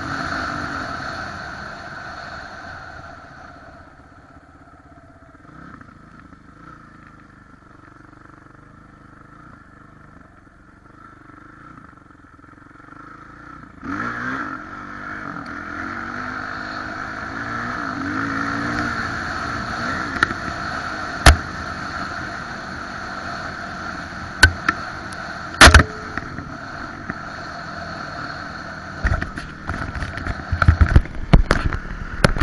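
Kawasaki 450 dirt bike's single-cylinder four-stroke engine heard on board while riding. The engine dies down to a low run for about ten seconds, then picks up again around halfway with the revs rising and falling. A few sharp knocks come about two-thirds through, and a jumble of knocks and rubbing comes near the end.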